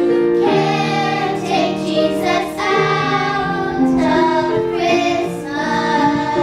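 A small group of children singing together, holding each note for about half a second to a second.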